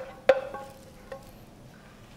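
A sharp clink of kitchenware, a utensil striking a pan or plate, ringing briefly with a clear tone, followed by a fainter tap about a second in.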